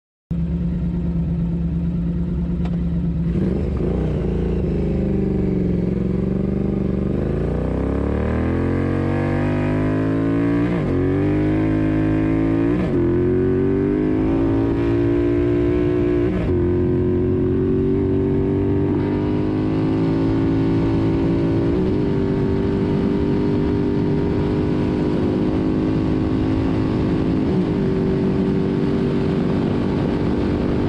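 Triumph Thruxton R's 1200 cc parallel-twin engine accelerating hard, heard from a camera on the bike. Its pitch climbs through the gears with a brief drop at each upshift, then holds high and nearly steady in the top gears.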